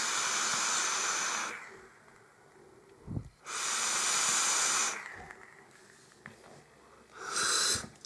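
Vaping on a brass Illuminatus clone mod with a Quasar dripping atomizer: a breathy hiss of draw and exhale about two seconds long, a soft knock, a second hiss of about a second and a half, and a short one near the end.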